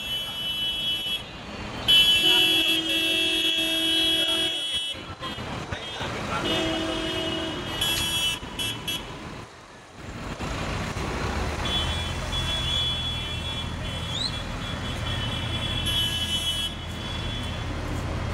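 Horns blaring in long held blasts from a slow-moving convoy of farm tractors, over the low rumble of their diesel engines. The loudest blast comes about two seconds in and lasts a couple of seconds, a shorter one follows a few seconds later, and in the second half the engine rumble grows louder with further horn notes.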